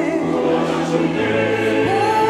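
A large mixed church choir sings a Korean sacred anthem in parts, with one group echoing the other's line ("날 구원 하셨네 / 구원 하셨네"), over piano accompaniment.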